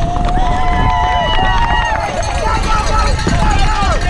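Spectators at the trackside shouting long, drawn-out cheers as a downhill mountain bike passes, several voices overlapping, over a steady low rumble.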